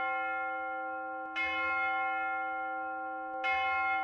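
A church bell tolling, struck about every two seconds, each stroke ringing on and slowly dying away.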